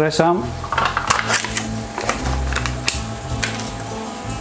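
Thick cream sauce bubbling in a frying pan on the hob, with scattered sharp pops as bubbles burst.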